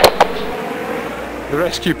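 A man's voice narrating, broken by about a second of steady background hiss between words.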